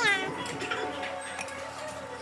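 Background music playing, opened by a brief high cry that falls in pitch.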